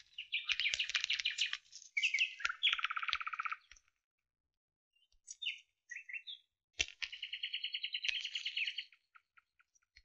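Bird-like chirping trills in three bursts of one to two seconds each, with a few short chirps between and a sharp click just before the last burst.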